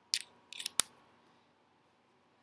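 A short soft hiss, then a couple of small ticks and one sharp click a little under a second in, like a computer mouse clicking to advance a slide, against quiet room tone.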